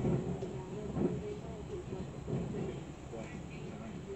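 Indistinct, muffled speech over a low steady rumble.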